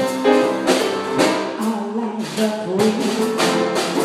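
Live small-group jazz: grand piano and drum kit, cymbal or drum strokes about twice a second, under a held, gliding melody line.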